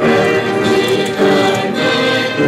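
A church congregation singing a hymn together, many voices holding sustained notes.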